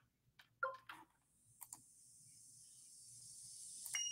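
A few faint, short clicks in the first two seconds, followed by a faint high hiss that slowly grows louder toward the end.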